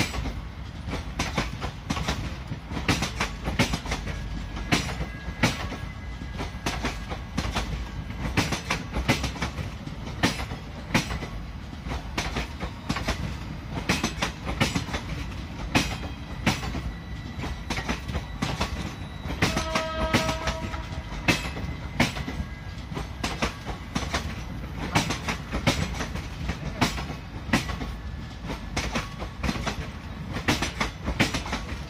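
Passenger train coaches rolling slowly past, their wheels clicking steadily over the rail joints over a low rumble. A short tone sounds once, about two-thirds of the way through.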